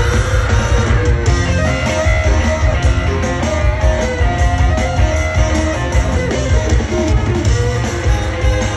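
Live rock band playing an instrumental passage: electric guitars over bass and drums, heard loud and steady from the audience.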